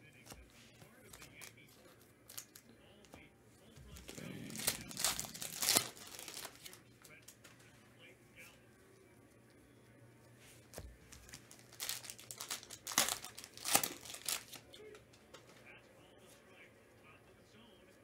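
Stack of chrome trading cards handled in gloved hands, the cards sliding and rubbing against each other in two bursts of rustling, about four seconds in and again around twelve seconds in.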